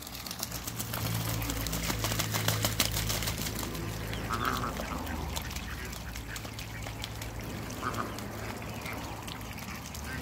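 Ducks quacking a few times, with short calls about four seconds in and again near eight seconds, amid quick clicking and splashing of bills dabbling in a shallow puddle, over a low steady hum.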